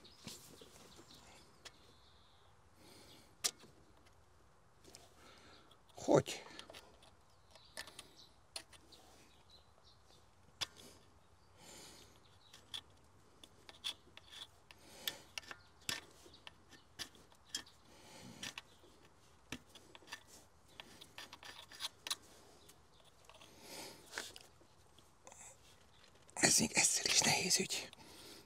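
A screwdriver scraping a baked-on old paper gasket off the metal face of a Suzuki Swift thermostat housing: scattered short scrapes and metallic ticks with pauses between them, and a louder, longer stretch of scraping noise near the end.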